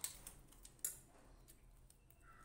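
Metal spoon clicking against a stainless steel plate: two light clicks, one at the start and a sharper one just under a second in.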